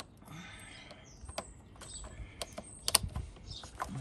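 Scattered small clicks and light scraping as the red spring-loaded clamp of a jump-starter is worked into a tight space onto a motorcycle battery terminal. The sharpest clicks come about three seconds in.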